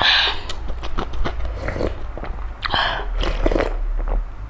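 Close-miked eating sounds of a person chewing noodle soup: wet chewing clicks and smacks, with two short hissy sucking sounds near the start and a little under three seconds in, over a steady low hum.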